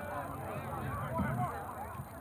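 Several voices shouting and calling over one another at once, with no words clear.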